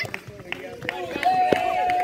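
Several young men's voices shouting and calling over one another during a kho kho game, with one long, steady shout in the second half.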